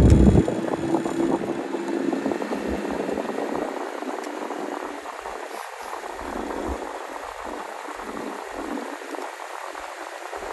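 Water rushing and bubbling along the hull of a moving coaching launch, slowly growing quieter. A loud low rumble at the start drops away about half a second in.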